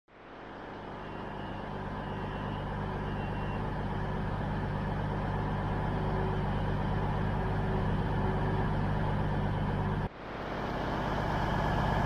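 Underfloor diesel engines of a Class 221 Super Voyager idling at the platform: a steady low hum with several fixed tones. It fades in, breaks off sharply about ten seconds in, then fades in again.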